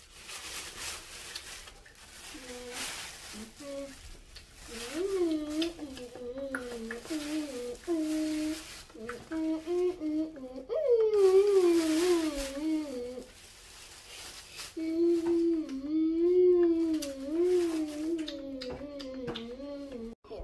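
A child humming a wandering tune in long held notes. Dry corn husks and a plastic bag rustle and crackle as they are gathered up, mostly in the first few seconds and again about ten seconds in.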